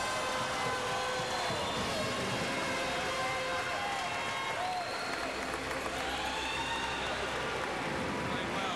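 A man's voice over the arena public-address system, drawn out and echoing through the rink, over steady crowd applause.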